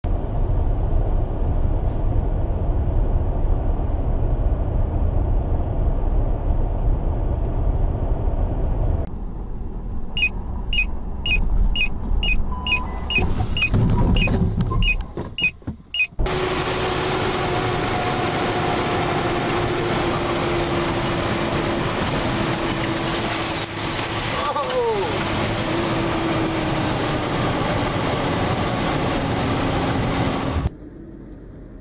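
Car interior and road noise picked up by dashcams on moving cars, changing with each cut. In the middle a quick run of short high beeps, about two or three a second, comes with a loud low rumble.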